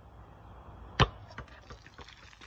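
A basketball with a beer bottle on top striking the concrete about a second in: one sharp thump as the bounce launches the bottle into the air. A few faint clicks follow.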